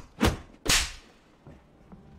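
Two heavy thuds about half a second apart, the second trailing off briefly, continuing a run of similar blows.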